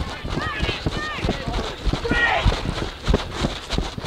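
A person running on grass, heard as a quick irregular run of footfalls through a body-worn microphone, with shouts from players in the distance.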